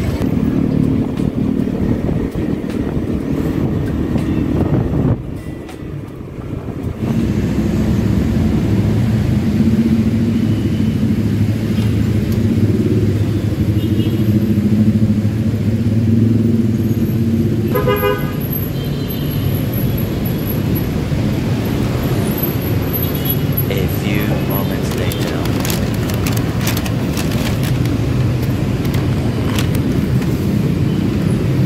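Honda scooter engine running while riding slowly through street traffic, easing off briefly about five seconds in. A short horn toot sounds a little past the middle.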